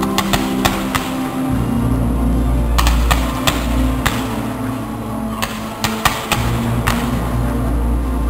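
Fireworks going off, a dozen or so sharp cracks and pops scattered irregularly, over loud music with a deep, steady bass line.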